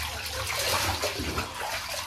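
Water poured from a plastic cup over a wet dog's back, splashing into shallow bathwater in a bathtub.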